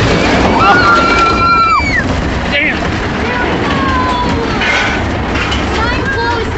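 Riders yelling, with one long high-pitched scream held for about a second near the start and shorter cries later. Underneath is the steady rumble of the roller coaster car running along its track.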